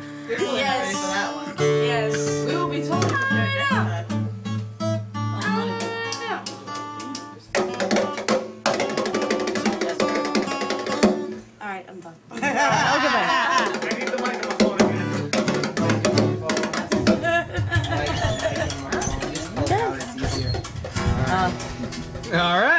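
Acoustic guitar played live: held single notes for the first few seconds, then strummed chords. It breaks off briefly about twelve seconds in, and a voice sings over the guitar in the later part.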